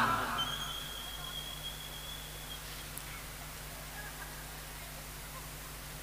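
A pause in the sermon: the preacher's last words echo away through the public-address system in the first second, leaving a faint steady low hum from the PA. A thin, high whistle-like tone is held for about two seconds near the start, and there is a single faint click about halfway through.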